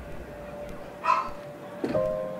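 Sparse, slow piano notes played on a keyboard: a held note fades out, a short higher sound comes about a second in, and a new chord is struck near the end.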